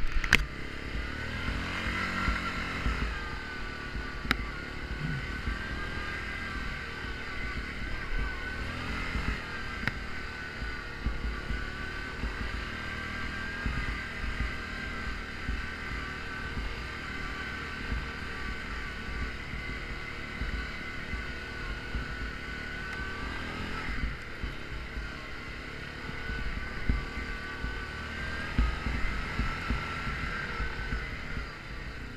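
Yamaha Grizzly ATV engine running steadily at trail speed, heard from on board. Its pitch rises and eases a little as the throttle changes, over low irregular knocks from the machine jolting on the rutted snow.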